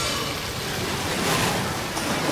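A cartoon whoosh sound effect: a steady, fairly loud rushing noise that swells briefly about halfway through.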